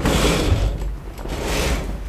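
A curtain being drawn open along its rail, sliding in two rasping pulls about a second apart.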